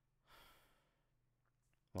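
Near silence with one soft breath out, close to a microphone, about a third of a second in and lasting under half a second.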